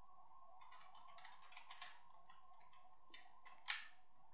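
Faint keystrokes on a computer keyboard: a scattering of light clicks with a sharper one near the end, over a steady faint hum.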